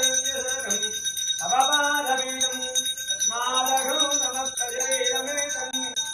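Brass hand bell (ghanta) rung steadily during aarti, its ringing unbroken, over a voice chanting in phrases of a second or so with short pauses.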